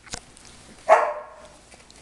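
A Stabyhoun puppy gives one short, high yip about a second in, after a short tap near the start.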